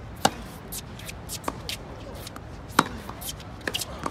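Tennis ball hits and bounces on a hard court: a sharp racket-on-ball pop about a quarter second in, with a forehand. Another loud pop comes near three seconds in, with fainter hits and bounces between and near the end.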